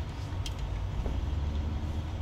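A vehicle engine running, heard from inside the cab as a steady low rumble.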